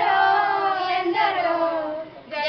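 A group of schoolgirls singing a Telugu patriotic song together, holding two long notes, the second starting about a second in.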